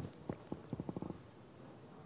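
A quick run of faint, sharp clicks, about eight within a second, over low room hiss.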